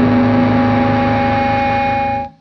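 Heavily distorted electric guitar noise held as a steady drone, with a ringing feedback tone rising out of it, in a grindcore recording.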